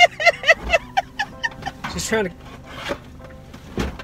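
Laughing in the first second, then scraping and a few knocks as a rusty metal chair is pushed into the car's rear cargo area.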